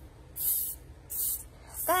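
Leftover butane hissing out of a Cohiba torch lighter's filling valve as its pin is pressed with a small screwdriver tip, in three short hisses: the old gas being bled out before a refill.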